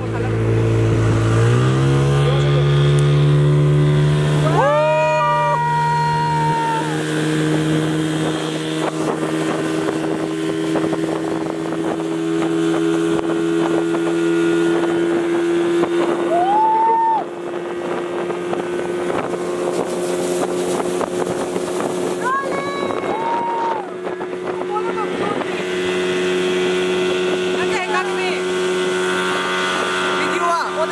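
A speedboat's 30 hp outboard motor running at high speed. Its pitch rises about a second in as the throttle opens, then holds steady.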